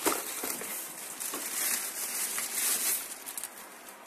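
Packaging rustling and crinkling, handled irregularly, as a wrapped charger and cable are lifted out of a cardboard box, with a sharp knock right at the start.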